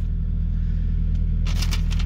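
Car engine running steadily, a low even hum heard from inside the cabin, with a short rustle near the end.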